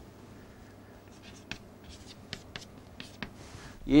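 Chalk on a green chalkboard as a line and single letters are written: a string of brief sharp taps and strokes starting about a second in.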